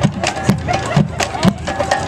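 High school marching band playing: drums keep a steady beat, with low bass-drum thumps and sharp snare hits about twice a second, and held wind notes join in the second half.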